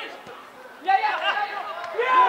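Men shouting on and around a football pitch during an attack on goal. The voices are quieter at first, then there are loud calls about a second in.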